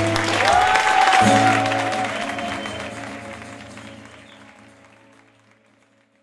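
Acoustic guitar's final chords strummed and left ringing under a last held sung note, with applause breaking out. The sound then fades steadily away to nothing near the end.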